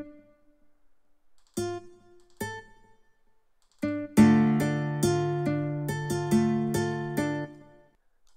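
Sampled guitar from Studio One's Presence virtual instrument: three single plucked notes sound one at a time as they are auditioned, then from about four seconds a quick run of plucked notes over a held low chord plays and dies away just before the end.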